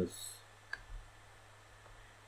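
A single sharp computer mouse click about three-quarters of a second in, over faint room hum.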